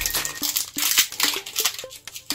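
Foil Pokémon booster pack wrapper crinkling as it is torn open by hand. Background music with a regular plucked beat, about three beats a second, runs underneath.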